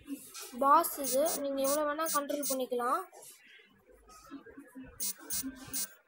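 A person's voice talking for about three seconds, then fainter, short bits of speech near the end.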